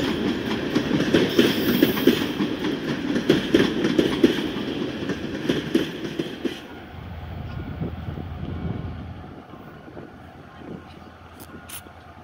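Passenger coaches rolling past close by, their wheels clattering rhythmically over the rail joints. About six and a half seconds in the clatter cuts off to a much quieter, steady low hum.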